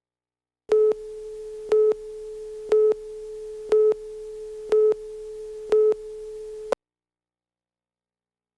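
Countdown leader tone: a steady electronic test tone of one pitch with a louder beep once a second, six beeps in all, counting down to the start of the programme. It starts about a second in and cuts off suddenly after the sixth beep.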